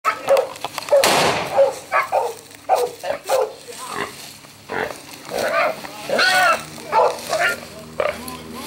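A wild boar pinned on the ground by a hunting dog, squealing and grunting in many short, loud calls, one harsh squeal about a second in.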